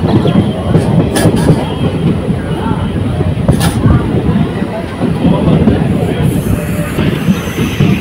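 Passenger train running along the track, heard from an open window of the coach: a loud, steady rumble of wheels on the rails, with a few sharp clicks.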